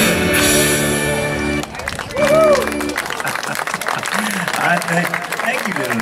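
A live country-rock song ends on a held chord that cuts off about a second and a half in. Audience applause follows, with a whoop and a man's voice over the clapping.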